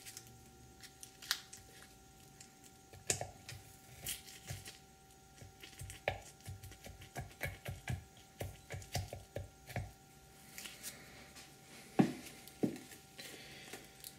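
A small knife and fingers picking and scraping at half-cured expanding spray foam over masking tape: a string of soft, irregular clicks, scrapes and crinkles, the sharpest about three seconds in and near the end.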